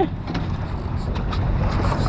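Low, steady wind rumble on the microphone, with a few faint knocks from handling on the boat deck.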